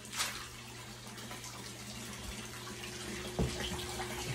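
Water running and splashing steadily into a filtered pond tank, with a steady low hum underneath. A brief patter just after the start as fish food pellets are poured onto the surface, and a single knock about three and a half seconds in.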